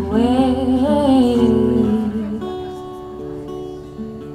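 A woman singing one long, wavering note over acoustic guitar chords; her voice drops out about two seconds in, leaving the guitar ringing on its own.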